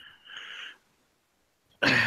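A short, faint breathy sound from a man pausing mid-sentence, then about a second of dead silence. A man's speech starts again near the end.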